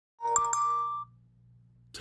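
A short electronic chime of two notes, the second higher, lasting under a second. A faint steady low hum follows.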